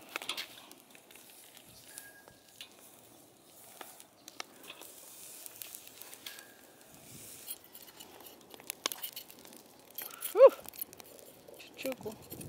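Faint, irregular crackling and ticking of a squirrel's fur singeing over glowing charcoal on a kettle grill. A short voice sound cuts in briefly about ten seconds in.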